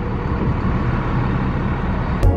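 Steady low rumble of vehicle traffic, with a faint engine hum running under it and no sudden events.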